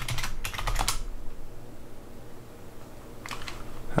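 Computer keyboard keys tapped in a quick run for about a second, then a couple more taps near the end, as a password is typed in at a terminal.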